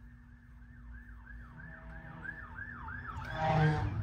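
Emergency vehicle siren in a fast yelp, each sweep falling in pitch, about three a second, growing louder as it approaches, with a louder blast near the end over a rising low rumble.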